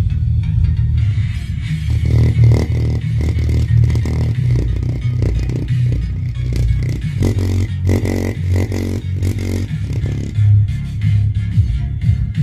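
Bass-heavy music playing loud through a homemade subwoofer box, with a strong, steady low bass under a rhythmic beat.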